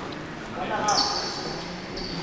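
Indoor futsal play on a wooden hall floor: players calling out, with ball touches and footsteps on the boards. A thin high squeak starts about halfway through and holds.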